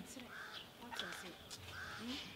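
A bird calling three times, about half a second apart, with faint voices underneath.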